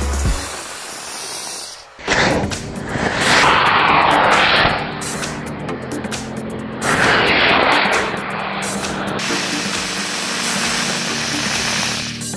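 Small rockets strapped to a toy tank firing with a hissing rush, two loud bursts a few seconds apart, over background music with a steady beat.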